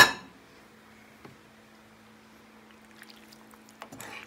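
Roasted Brussels sprouts and bacon are tipped into a skillet of sauced pasta, ending in a brief clatter at the very start. After that comes a steady low hum with a few faint taps.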